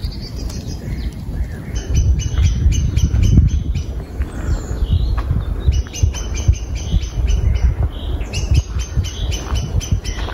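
A songbird calling in three runs of quick, evenly repeated high notes, over a loud, uneven low rumble on the microphone.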